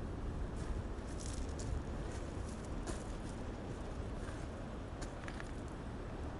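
Footsteps on a pebble beach: scattered crunches and clicks of stones shifting underfoot, over a steady low rumble.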